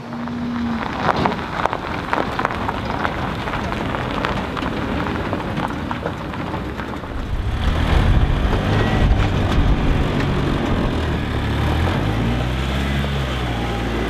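A patter of small clicks and rustling over a steady hiss, then, from about halfway, a Polaris Ranger utility vehicle's engine running as it drives off a trailer onto snow, its pitch rising and falling near the end.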